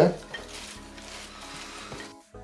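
Hands tossing and mixing fresh spinach and romaine lettuce leaves in a ceramic dish: a soft, steady leafy rustle over faint background music.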